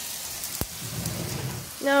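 Pot stickers sizzling in a frying pan of hot oil and added water, a steady hiss, with a single sharp click about half a second in.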